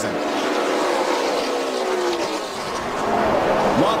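Stock car V8 engines running as race cars pass on track, their pitch sliding gradually lower as they come off speed after the checkered flag.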